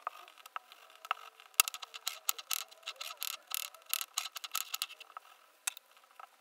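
Hands handling and pleating a soft gyoza dough wrapper on a worktop: a dense run of small clicks, taps and rustles, busiest from about a second and a half in until near the end.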